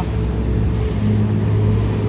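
Bass boat's outboard motor running steadily underway with a low, even hum, working under load while towing another boat.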